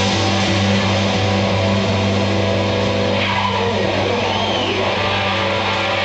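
Live electric blues-rock band holding a long sustained distorted chord, with the electric guitar sliding its pitch up and down in sweeping bends about halfway through.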